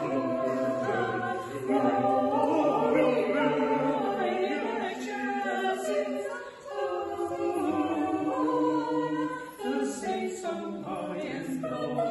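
Small mixed choir of women and men singing a Christmas song in harmony, in long held notes with short breaks between phrases.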